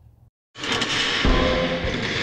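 Sound effect for an animated vault door: a loud, noisy mechanical sound starting about half a second in, with a deep thud near the middle, that cuts off abruptly.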